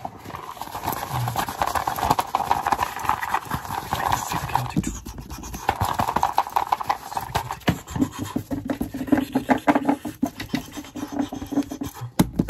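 Fast, aggressive ASMR scratching and tapping close to the microphone, a dense run of quick scratches and taps. About two-thirds of the way through, it turns to rapid tapping with a lower ring under it.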